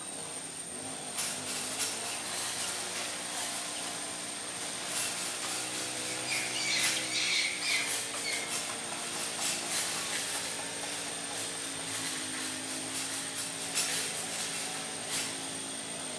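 Outdoor ambience: a steady high-pitched whine, a faint low hum that slowly rises and falls, and a short run of chirps about six to eight seconds in.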